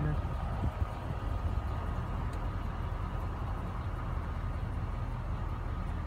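Chevrolet 2500 pickup's engine idling, a steady low rumble heard from inside the cab.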